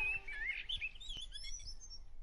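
Birds chirping: many short rising and falling calls that grow fainter toward the end.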